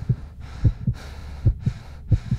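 A heartbeat sound effect: paired low lub-dub thumps, about three beats in two seconds, over a steady low hum, setting a mood of panic.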